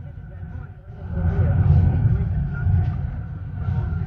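Low, uneven rumble of a car on the move, heard from inside the cabin; it dips briefly about a second in.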